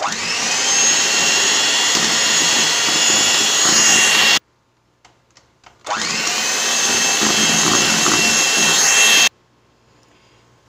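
Electric hand mixer beating a creamed cake batter with eggs added, run in two bursts of about four seconds each with a short pause between. Each time its motor whine climbs as it spins up, holds steady and cuts off suddenly.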